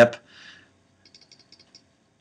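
A quick run of about seven faint, light clicks at a computer, a little over a second in, after a short spoken "yep".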